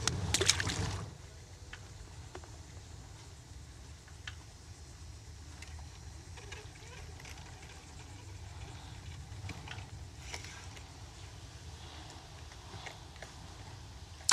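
A small sheepshead dropped back into the water, with a brief splash in the first second. After it comes a faint, steady background noise with a few small clicks and knocks.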